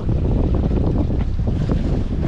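Wind buffeting the microphone in a steady low rumble, with a few faint small clicks over it.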